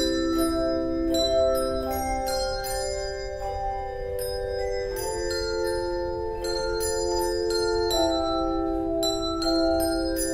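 Handbell choir playing: chords of ringing bells struck and left to sustain, moving to a new chord every few seconds.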